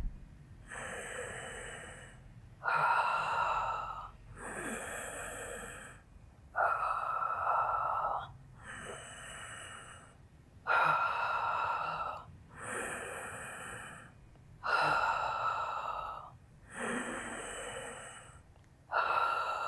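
A woman breathing audibly through a held Pilates chest lift: slow, even breaths that alternate louder and softer, with a louder breath about every four seconds.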